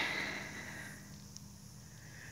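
Faint outdoor background hiss with a low steady hum. A sniff right at the start fades within half a second, and one small faint tick comes a little past halfway.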